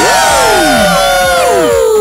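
A group of young people cheering and calling out together, many voices overlapping, with long drawn-out calls that slide down in pitch.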